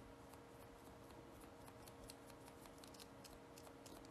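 Near silence: faint light ticks, several a second, from a small sponge dabbing white paint gel onto a fingernail, over a low steady hum.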